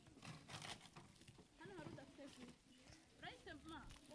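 Faint high-pitched children's voices talking in short bursts, with a few seconds of crinkling from sweet wrappers being torn open in the first second.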